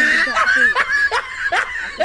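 A woman laughing in a string of short, high-pitched bursts.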